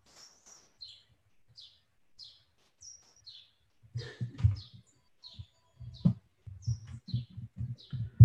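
A small bird chirping again and again, short falling high chirps about every half second. From about halfway through, low thumps and knocks of a microphone being handled close up.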